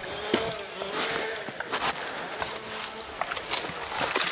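A motor buzzing in the background, its pitch rising and falling, with scattered crunches of footsteps on wet gravel and driftwood.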